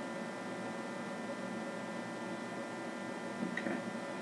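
Steady low hum with a faint hiss: background room tone, with no distinct event apart from a faint brief sound near the end.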